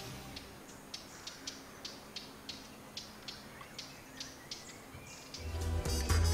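Short, high chirps repeating about three times a second over a faint background, from an animal such as a cricket or bird; music with a deep bass comes in near the end.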